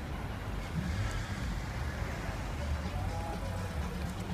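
Low, steady engine rumble of cars crawling in slow town-centre traffic.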